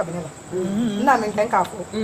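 Several people's voices calling out and chattering, with quick high-pitched vocal sweeps about halfway through.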